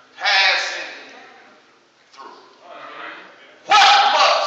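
A man preaching in loud, drawn-out, half-sung shouts, one just after the start and one near the end, each trailing off in the room's echo, with a quieter phrase between.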